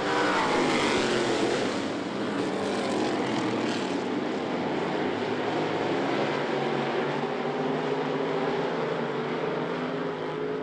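Several street stock race car engines running together at speed on a dirt oval, a steady, loud multi-engine drone. Over the first second or so one engine note falls in pitch as a car passes close by.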